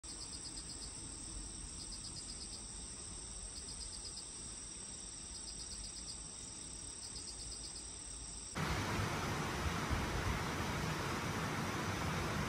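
Insects singing: a steady high-pitched trill with short pulsed chirps repeating about every second and a half. About eight and a half seconds in, this cuts to a louder, steady rushing noise with a low rumble.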